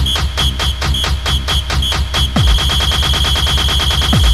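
Instrumental passage of an electronic Italodance track: fast, even synth stabs with a high note repeating in short blips. A deep kick drum comes back in about two and a half seconds in.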